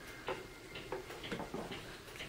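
A handful of light clicks and taps, about six in two seconds, from handling a hot glue gun and a wooden dowel wrapped in satin ribbon on a tabletop.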